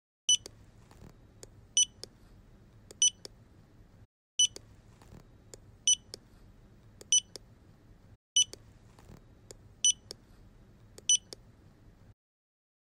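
Electronic scanner beeps for fingerprint scanning: three short high beeps, the set repeated three times with a brief gap between sets, over a faint low hum.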